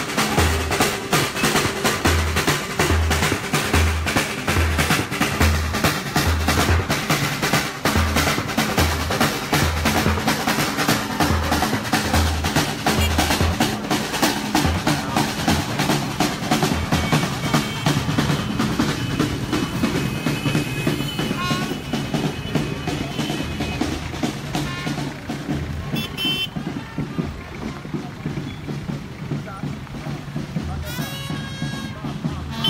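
Marching street band of drums and brass playing: busy snare drumming with a bass drum beating about twice a second and horns over it. The drumming thins and gets a little quieter in the last few seconds.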